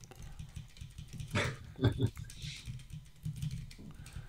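Typing on a computer keyboard: a run of light key clicks, with two brief louder sounds about one and a half and two seconds in.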